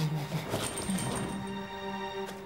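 Comic background music: after a sudden start, a held note with a brief high whistling tone above it.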